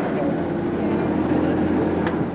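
A car engine running steadily, with faint voices behind it.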